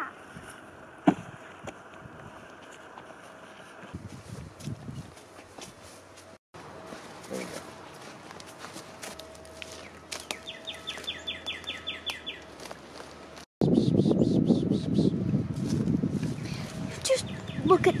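A single thump about a second in, like a landing from a jump onto the ground, then quiet outdoor ambience; in the last few seconds, louder rustling and crunching of footsteps through dry grass and brush.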